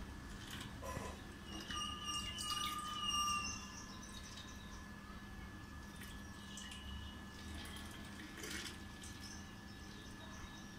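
Water trickling and dripping as it runs through a small water flowmeter and into a bottle, fairly faint, with a few short high chirps about two to three seconds in.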